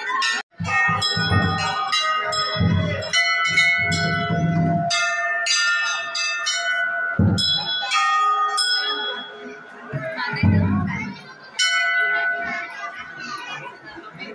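Large hanging brass temple bells struck again and again, one clang after another with their ringing tones overlapping, and a few deep thuds mixed in.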